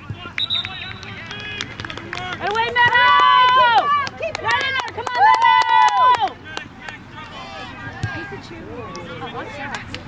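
Two long, drawn-out shouts from the sideline, each held for more than a second, the second following about half a second after the first. Fainter calls from players and spectators continue around them.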